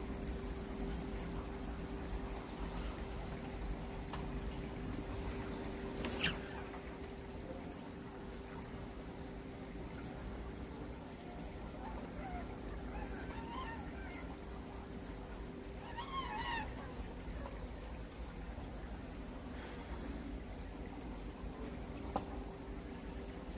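Steady background hum and low rumble of an enclosed indoor fishing pond, with one sharp click about six seconds in and a few faint, brief high chirps later on.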